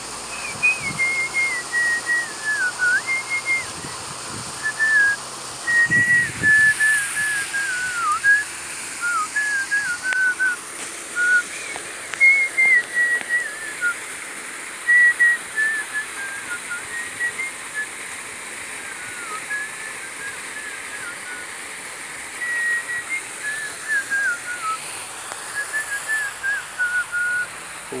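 A person whistling a slow, wandering tune in short held notes with small slides, over a steady background hiss.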